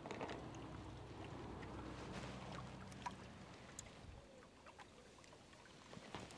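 Faint low engine drone from a distant motor boat, steady for about four seconds and then dying away, with a few small clicks close by.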